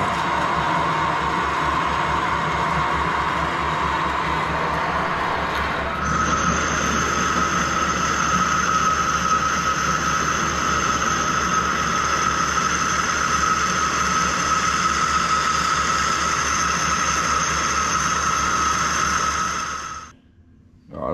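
Metal lathe running while a large twist drill cuts through a steel bush; the drill cuts on one side only because it was sharpened off-centre. About six seconds in, the sound switches to an internal boring tool skimming inside the bore, with a steady high whine over the lathe's running.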